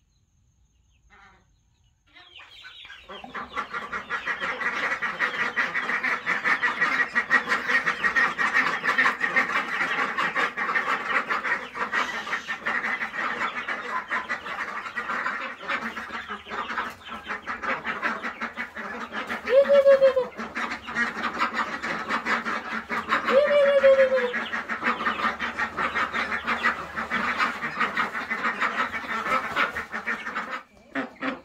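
A flock of young domestic ducks calls continuously as they crowd around to be fed. The chatter starts a couple of seconds in, and two louder calls, each falling in pitch, stand out about two-thirds of the way through.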